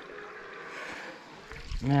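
A bucktail lure being reeled fast along the water's surface, churning up spray with a soft, even splashing hiss.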